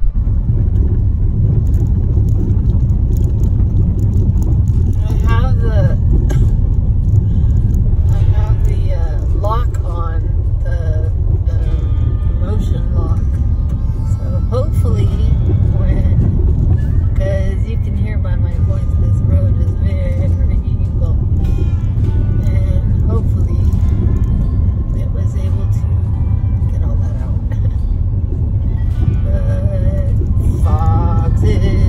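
Heavy low rumble of a car driving over a bumpy dirt road, heard from inside the cabin. A voice sings in snatches over it, mostly in the first half and again near the end.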